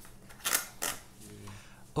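Two sharp clicks about a third of a second apart as metal parts at a motorcycle's carburettor and airbox are handled.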